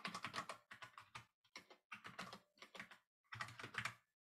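Faint, irregular typing on a computer keyboard: small runs of key clicks with short gaps between them.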